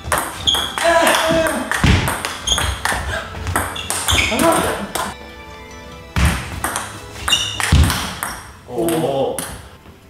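Table tennis rally: the plastic ball clicking off the table and the rackets, one of them faced with ILLUSION SP short-pips rubber, about two hits a second with a short ringing ping after each and a brief lull about five seconds in. Short exclamations from the players are mixed in.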